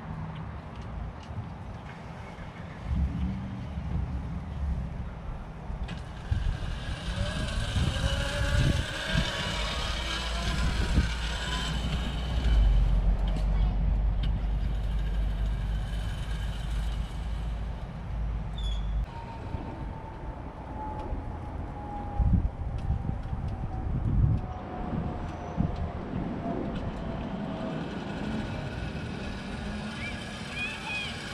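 Outdoor street ambience: irregular wind rumble on the microphone and passing vehicle noise, heaviest in the middle. A long, slowly falling tone runs through the second half.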